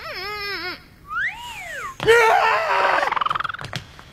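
A cartoon girl's wordless, closed-mouth vocal noises: wavering hums and whines with her mouth full of gum, then a louder burst of vocalising that ends in a rising glide as a bubble-gum bubble is blown.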